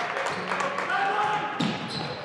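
Live basketball game sound in a gym: a ball being dribbled on the hardwood, shouting voices, and sneaker squeaks near the end.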